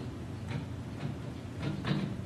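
A pen writing on a tablet screen, giving a few faint soft taps over a low steady room hum.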